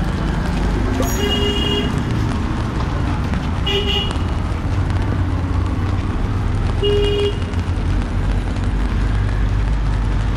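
Street traffic rumbling steadily, with a vehicle horn tooting three short times: about a second in, near four seconds, and near seven seconds.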